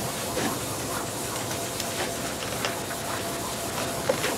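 Blackboard eraser rubbing back and forth across a chalkboard: a steady scrubbing hiss with faint scattered taps.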